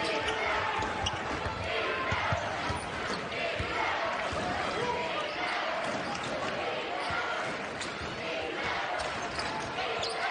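Basketball being dribbled on a hardwood court, a series of short thuds, over the steady murmur of an arena crowd.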